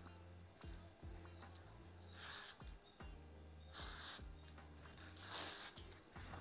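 Aerosol can of Zozu dry shampoo spraying onto hair in three short hissing bursts, about two, four and five and a half seconds in.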